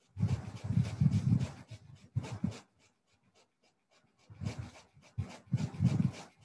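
Breathing sounds close to the microphone, in uneven noisy bursts with a pause of nearly two seconds in the middle.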